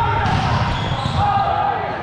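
Echoing indoor sports-hall sound: players' voices with balls and feet thudding on a hardwood volleyball court.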